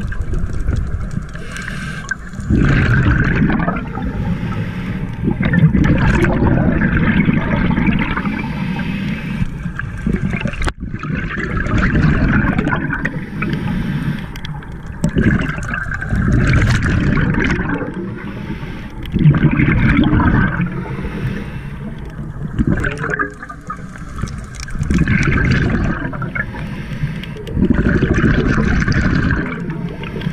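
Scuba breathing through a regulator, heard underwater: gurgling rushes of exhaled bubbles every three to four seconds, with quieter stretches between.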